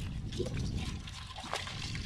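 Hands working in shallow muddy water, lifting out a crab and dropping it into a plastic basin of live crabs: wet splashing and handling noise, with a sharp click about one and a half seconds in.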